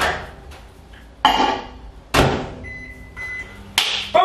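Built-in microwave oven being shut and set: sharp clunks from the door and panel, then two short high beeps from the keypad.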